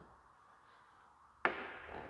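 Silence, then a single light knock about one and a half seconds in, followed by faint handling noise.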